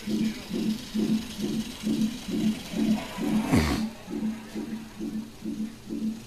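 Fetal heart monitor's Doppler speaker sounding the unborn baby's heartbeat as a steady pulse, a little over two beats a second (about 140 a minute). About halfway through, a brief sound slides quickly down in pitch.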